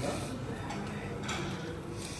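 Light clicks and crackles of crisp gol gappa (pani puri) shells being handled and filled by hand, over a low murmur of voices.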